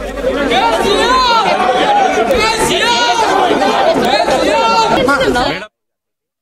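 A crowd of people talking over one another in a jostling throng, many voices at once. The sound cuts off suddenly near the end.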